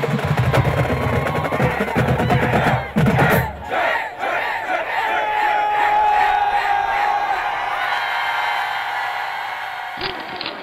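Intro theme music with heavy drums for the first three and a half seconds, then the drums cut out and a stadium crowd yelling and cheering carries on, slowly fading.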